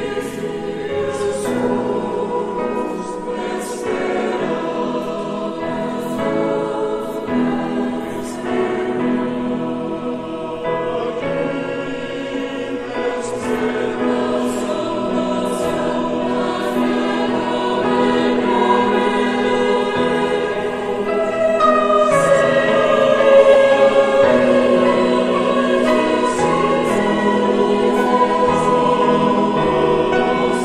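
A church choir singing a hymn, many voices holding long chords together, with the 's' sounds of the words standing out; it swells louder about two-thirds of the way through.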